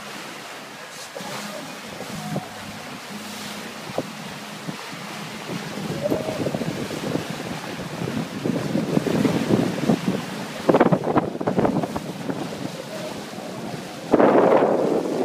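Wind buffeting the microphone over the rush of sea water past a sailboat's hull. It grows stronger in the second half, with heavy gusts about eleven seconds in.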